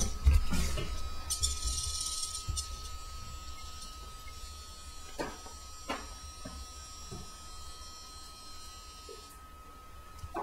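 A steady high electronic tone, with rustling early on and two sharp knocks about five and six seconds in as the wired headpiece is handled.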